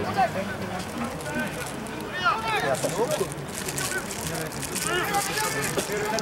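Scattered distant shouts and calls from rugby players around a ruck, with a few louder calls about two seconds in and again near the end, over a steady low hum and outdoor background noise.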